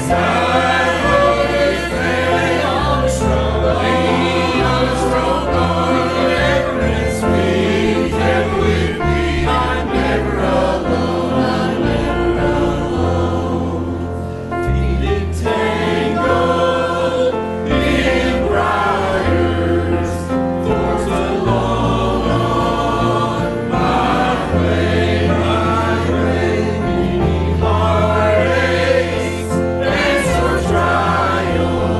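Mixed church choir of men and women singing a gospel hymn together, with instrumental accompaniment and a steady bass line beneath. The singing dips briefly about halfway through at a break between phrases.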